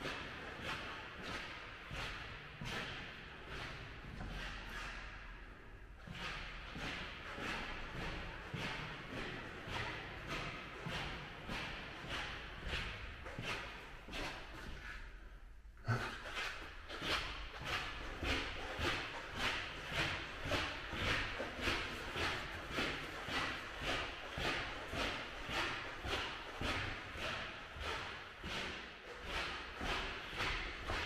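Footsteps walking on a hard hallway floor, about two steps a second, the shoes squeaking with each step. One sharp knock at a wooden door about halfway through is the loudest sound.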